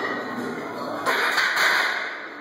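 Loaded barbell being walked into a steel squat rack: shuffling steps, then a sudden clank about a second in as the bar meets the rack's hooks, with noise that carries on after it.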